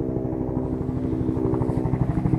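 An engine running steadily at a constant pitch, with a fast even pulse.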